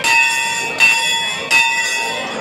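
Large hanging brass temple bell rung by hand, struck three times about three-quarters of a second apart, each stroke ringing on.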